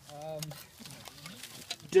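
A man's voice: a short drawn-out exclamation in the first half-second, then quieter, broken voice sounds.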